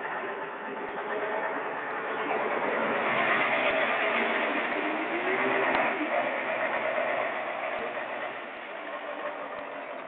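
Heavy Hyundai 270's diesel engine running under load, with its pitch wavering. It builds up over the first few seconds, runs loudest in the middle and eases off in the second half.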